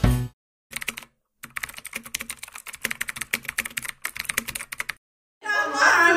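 Rapid clicking of computer-keyboard typing in irregular runs, stopping about five seconds in; voices begin just before the end.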